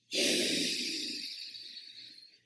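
A man blowing one long breath into a close microphone, strongest at the start and fading away over about two seconds.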